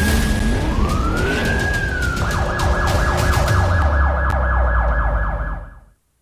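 Emergency-vehicle siren sound effect over a low rumble: a wail rising and falling, then switching to a rapid yelp about two seconds in, fading out just before the end.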